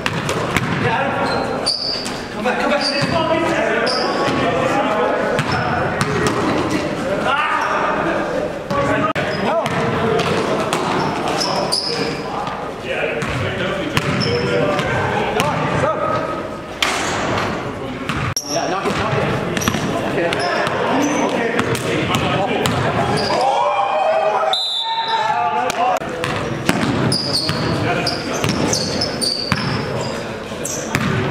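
A basketball bouncing repeatedly on a gym court as players dribble in a game, with players' indistinct voices echoing around the large hall.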